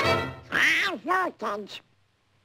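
Donald Duck's quacking cartoon voice: three short quacky syllables, each rising and falling in pitch. The orchestral score stops just as it begins.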